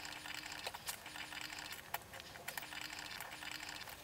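Faint scattered clicks and ticks of a chrome T fitting being threaded clockwise by hand onto a sink's angle stop valve, with a faint low hum that comes and goes.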